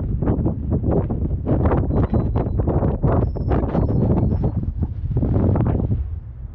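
Air rushing and buffeting over a camera mounted on a climbing high-power rocket, in gusty surges. A few brief thin whistling tones come through in the middle.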